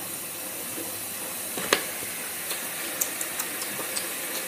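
A steady hiss with a few short, faint clicks and taps.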